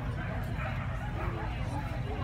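A dog barking over the murmur of people talking.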